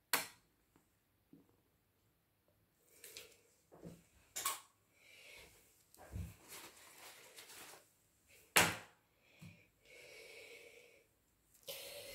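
Scattered sharp clicks and knocks of objects being handled and set down on a plastic-covered work table, with three louder clacks (at the start, about four seconds in and near nine seconds) and soft rustling in between.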